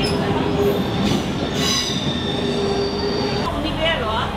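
The NS 41 'Blauwe Engel' vintage trainset rolling slowly along the platform, its running gear giving a high-pitched squeal over a steady rumble, strongest from about a second and a half in until near the end.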